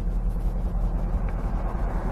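The 327 cubic-inch V8 of a 1962 Corvette running steadily, heard from the open cockpit of the convertible with the top down.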